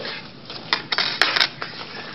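Rustling and a few sharp clicks from hands working the side pouch of a nylon shoulder bag, most of it about a second in.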